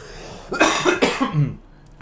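A man clearing his throat with a cough into his fist: one harsh burst about half a second in, trailing off into a lower rasp.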